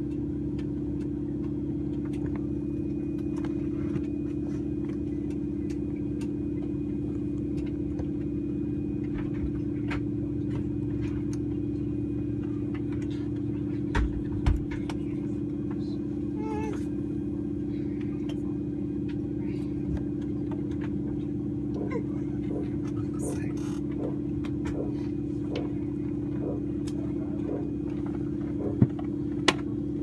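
Steady low drone inside the cabin of a Saab 340B+ turboprop sitting before engine start, with one strong constant tone. Two thumps come about halfway through, and faint short squeaks or distant voices follow later.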